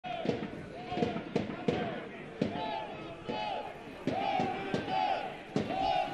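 Football supporters chanting in the stands, with a drum beating along about once or twice a second.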